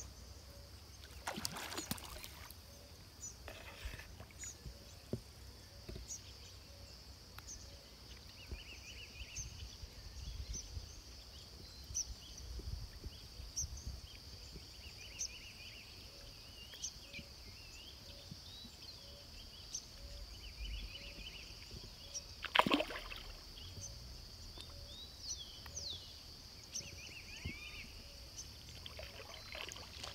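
Quiet pond-side ambience: a steady high-pitched hum with faint bird chirps and a low wind rumble, broken by soft splashes of large tambacu rising to take floating bread. One sharper sudden sound stands out about two-thirds of the way through.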